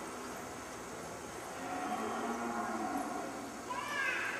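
Cattle bawling: a low call about two seconds in, then a higher, arching call near the end, over steady background noise.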